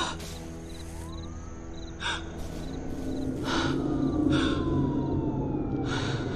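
Film score music with held tones and a slowly falling tone in the second half, with a woman's short gasping breaths every second or so. The music grows louder from about halfway through.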